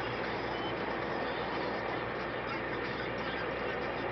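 Steady motorway traffic noise: a continuous rumble of engines and tyres with a low hum, unchanging in level.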